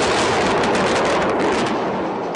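Air strikes on a city: a continuous loud rumble of explosions with a crackle of many sharp reports running through it.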